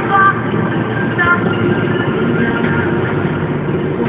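Steady engine and road noise of a Toyota car on the move, heard from inside, with music playing under it; a few sung or melodic notes stand out in the first second and a half.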